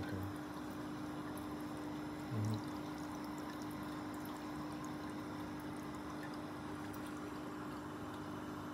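Steady rush of circulating water in a saltwater aquarium, under a constant low hum; a brief low thump about two and a half seconds in.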